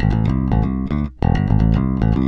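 Electric bass strung with Ernie Ball Cobalt flatwound strings, played fingerstyle in a riff of sustained notes. There is a short break about a second in.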